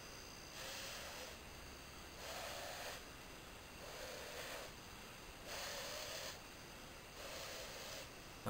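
A person blowing repeated long breaths into a smouldering tinder nest to coax a friction-fire ember into flame: about five blows, each under a second, with short pauses between.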